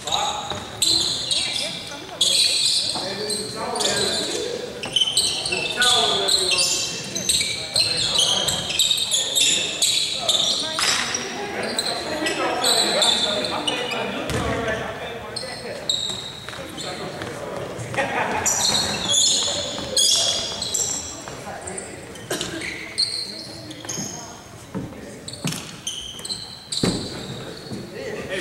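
Basketball bouncing on a hardwood gym floor, with players' voices and many short, high squeaks like sneakers on the court, echoing in a large gym.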